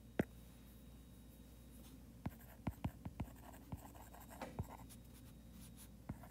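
Stylus tapping and sliding on a tablet's glass screen while handwriting a word: faint, irregular ticks, most of them between two and five seconds in.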